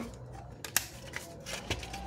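A few light clicks and taps of plastic and sheet metal as the digital TV receiver's metal case and plastic front panel are handled and worked apart, the sharpest click about three-quarters of a second in.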